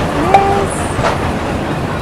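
Miniature ride train with open passenger carriages rolling past on its small track: a steady rumble of wheels on rail with a few sharp clicks.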